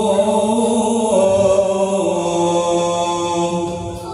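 A single voice chanting a melodic religious recitation in long held notes, stepping lower in pitch twice and fading near the end.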